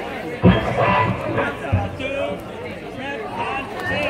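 Outdoor crowd chatter, with people talking near the microphone, and two low thumps, the first about half a second in and loudest, the second shortly before the two-second mark.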